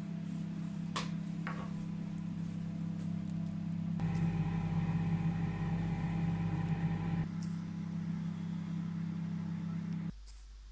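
Microwave oven running: a steady electrical hum with a fan's hiss, with two light clicks about a second in. The hum grows louder and fuller for a few seconds in the middle, then drops back.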